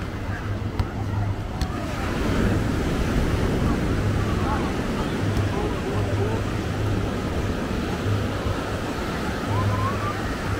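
Beach ambience: steady surf washing onto the shore, with voices from the crowd mixed in. The sound grows louder about two seconds in.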